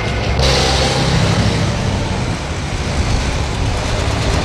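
City street traffic: a steady low rumble of vehicle engines under an even hiss, the hiss widening suddenly just under half a second in.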